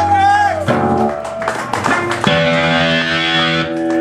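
Amplified electric guitar letting held chords ring, changing chord a few times, with a brief voice at the start.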